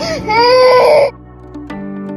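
A baby's whining cry lasting about a second, then cut off, over background music with steady held notes.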